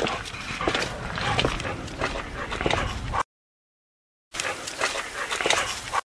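Footsteps walking through a graveyard, picked up by a handheld voice recorder: irregular crunching steps about two a second over a low rumble. They come in two short stretches, cut off by about a second of dead silence.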